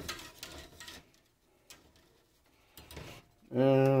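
Light clicking and rattling for about the first second, then near quiet, then a man begins speaking near the end.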